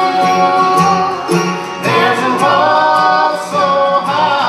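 A bluegrass band playing and singing: voices carrying a melody over picked acoustic guitar, mandolin, banjo and plucked upright bass.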